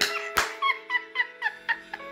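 A woman laughing in a quick string of short, high "ha" sounds, about four a second, over a held chord from the band. There is a sharp click about half a second in.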